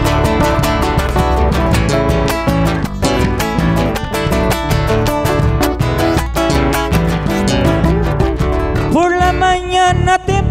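Chacarera played live by a band: strummed acoustic guitar with electric guitar and bass, and a bombo legüero beaten with sticks, in an instrumental passage between verses. A male singer's voice comes in near the end.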